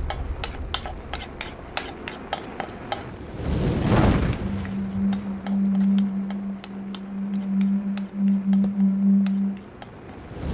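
Quick clinks and clatters of metal cooking utensils against pans and dishes. About four seconds in, a whoosh swells and fades, followed by a low, steady hum that lasts until just before the end.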